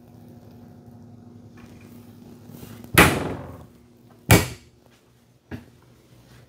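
Two loud knocks about a second apart as wooden RV cabinet doors of the coat closet are swung shut, then a smaller click; a low steady hum runs underneath.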